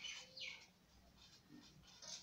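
Felt-tip marker writing on paper: a quick run of short, faint scratching strokes, strongest in the first second, then fainter ones.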